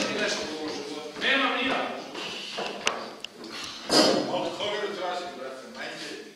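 Actors talking in Serbian during a stage comedy, with one sharp click about three seconds in.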